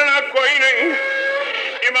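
A man's voice reciting a lament in a chanted, half-sung style, holding one long drawn-out note in the middle. The sound is thin, with no bass and no top, as on an old tape recording.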